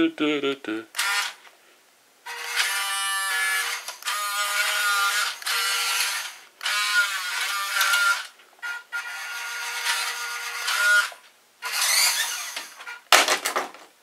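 Brushed electric motor and drivetrain of a WPL B-1 1:16 RC military truck whining in several bursts of a few seconds each, the pitch rising and falling with the throttle as the truck is driven fast back and forth.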